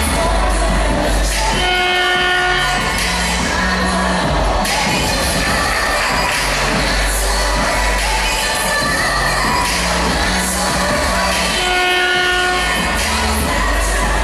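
Dance music played loud over an arena PA, with a heavy steady bass. A held horn-like blast sounds twice, about ten seconds apart.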